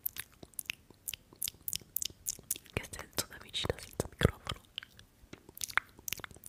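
Close-miked wet mouth clicks and lip smacks, several a second in an irregular run.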